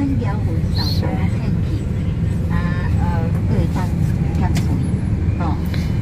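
Steady low rumble of road and engine noise inside a moving vehicle's cabin, with faint snatches of other voices about halfway through and near the end.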